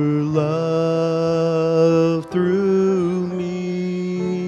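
A man singing a slow hymn into a microphone over instrumental accompaniment, holding long notes with vibrato; the melody moves to a new note about a third of a second in and again just past halfway.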